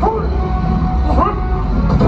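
Loud, steady low rumble of an aircraft engine from the stunt show's sound system, with the prop plane on stage. Two short shouts rising in pitch come over it, near the start and about a second in.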